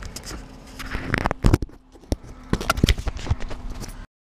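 Handling noise from a camera being grabbed off its mount and tumbling: a run of irregular knocks and clatter, loudest about a second and a half in and again around three seconds.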